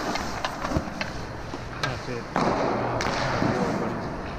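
Ice hockey goalie's skates and pads scraping across the ice in a butterfly slide from post to post, loudest about two and a half seconds in, with sharp knocks of puck and stick on the ice.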